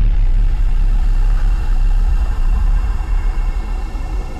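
Deep, steady rumble from the closing theme's sound design, with faint sustained high tones over it, easing off slightly near the end.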